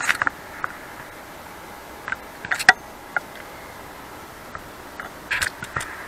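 A few sharp clicks and light knocks in three short clusters, at the start, about two and a half seconds in and near the end, from a computer being operated by mouse and a handheld camera being moved, over a steady low hiss.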